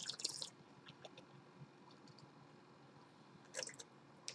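Faint sip and slurp of red wine from a glass, air drawn through the wine in the mouth, followed by a few soft wet mouth sounds and another brief one near the end.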